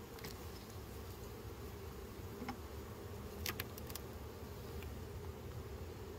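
Honeybees humming steadily around an open hive, with a few short sharp clicks of a metal hive tool working a frame, loudest about three and a half seconds in.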